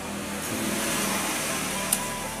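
A sharp knock of a machete blade striking an areca nut on a wooden chopping block, once near the end. Over it, a steady rushing noise swells in from about half a second in and stays the loudest sound.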